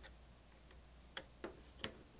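A few faint, short clicks, mostly in the second half, as a full-size HDMI plug is handled and pushed into a small USB HDMI capture card.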